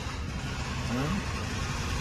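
Steady low background rumble of motor engines, with a brief rising note about a second in.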